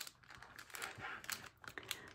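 Faint, irregular light clicks and crinkles of a clear plastic packet of chipboard die cuts being handled and set down on a wooden tabletop.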